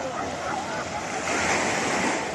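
Small waves washing onto a sandy beach, the wash swelling louder near the end, with a crowd talking in the background.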